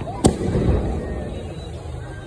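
A firework exploding with one sharp, loud bang about a quarter second in, followed by a low rumble that fades over about a second.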